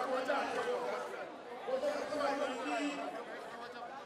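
Overlapping voices: several people chatting at once, with one voice close by.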